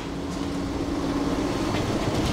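A steady hum with one faint low tone over an even background noise.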